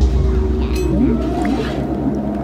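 Theme-park dark-ride soundtrack: moaning tones that glide up and down and cross each other over a loud, deep, rumbling drone, with a few sharp clicks.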